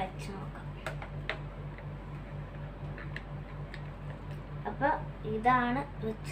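Light clicks and taps of a tablet being handled and fitted into the clamp of a plastic tablet stand, over a steady low hum pulsing about four times a second. A woman's voice comes in briefly near the end.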